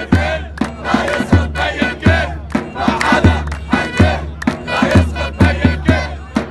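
A crowd of protesters shouting and chanting together, with a drum beaten in a steady rhythm underneath.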